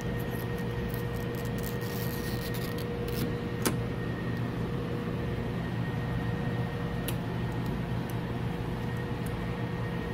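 Steady electrical-sounding hum with faint steady tones, with a few light clicks in the first few seconds and a sharper tick about three and a half seconds in.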